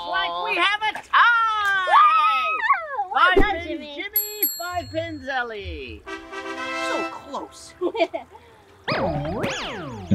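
Edited-in cartoon sound effects over light music: a run of falling, sliding pitches, a bright ding about four seconds in, and a springy boing near the end.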